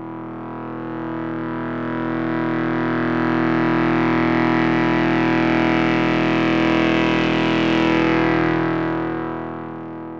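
A sustained, distorted synthesizer drone on one low note, swelling in over the first few seconds and fading near the end. In the middle its upper overtones open up and close again, like a slow filter sweep.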